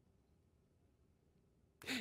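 Near silence with faint room tone, then a man's voice starts up again near the end.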